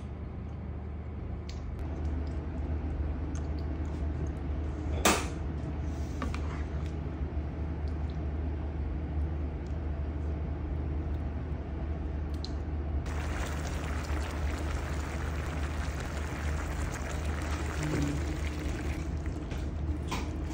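Opor ayam (chicken in coconut-milk curry) simmering in a frying pan and being stirred with a spoon, with wet liquid sounds. A louder hiss comes in about 13 s in and lasts to the end, over a steady low hum, with a single sharp click about 5 s in.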